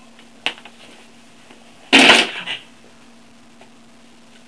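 A squeezed novelty noisemaker gives one short, loud, raspy blast about two seconds in, with a softer bit just after. A sharp click comes about half a second in.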